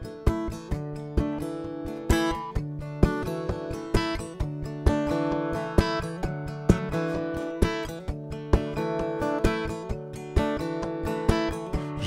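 Solo steel-string acoustic guitar with a capo playing a song's instrumental intro, notes strummed and picked in a steady rhythm of about two to three strokes a second, each left ringing.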